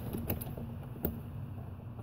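Light clicks of small plastic Lego pieces being handled and pulled apart, with one sharper click about a second in.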